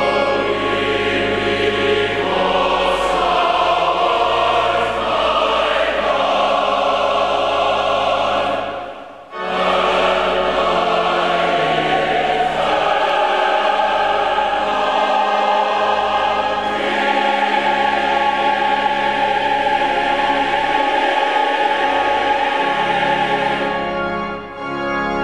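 Large church choir singing with pipe organ accompaniment, the organ holding low bass notes under the voices. The music pauses briefly about nine seconds in, then resumes.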